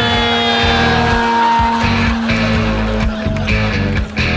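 Loud rock music with distorted electric guitar and drums; held guitar notes slide down in pitch during the first second.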